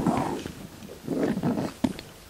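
Commotion of people getting up from a conference table: shuffling, rustling and chairs moving, with a sharp knock just before the end.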